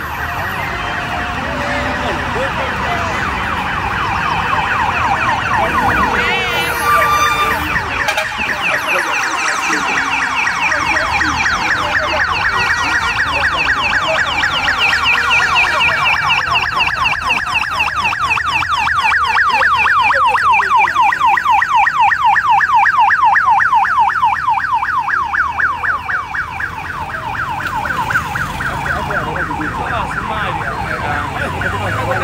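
Vehicle siren sounding a fast, rapidly repeating warble, clearest from about eight seconds in and loudest past the middle, over street noise.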